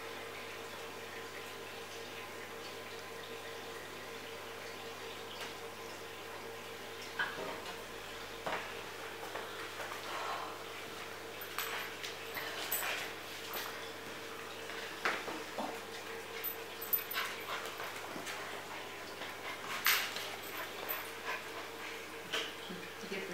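Bearded collie puppy giving short yips and whimpers while playing, scattered through the second half, over a faint steady hum.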